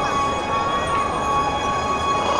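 Soundtrack of an outdoor projection light show played over loudspeakers: a steady drone of several held tones over a hiss, with a few faint gliding chirps.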